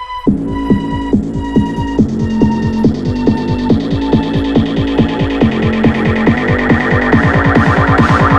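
Dubstep build-up: a kick and bass beat comes in about a quarter second in, roughly two hits a second, under a high synth line slowly falling in pitch. From about halfway the hits quicken into a fast roll, getting louder as it leads into the drop.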